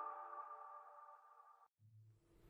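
The last held chord of an electronic intro jingle dying away and cutting off about three-quarters of the way through, followed by near silence.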